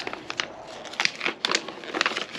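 A folded paper instruction manual being unfolded and handled: crisp paper crackles, a sharp one about every half second.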